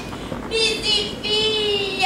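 A woman's high voice singing long held, wavering notes, starting about half a second in with a couple of short breaks.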